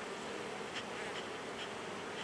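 Honey bees humming steadily from an open hive box full of bees, with a few short hissing puffs from a bee smoker's bellows.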